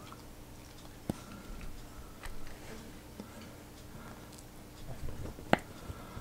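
Faint plastic clicks and squishes of a unicorn e-liquid bottle being pushed into a pod's fill port and squeezed, with one sharper click shortly before the end.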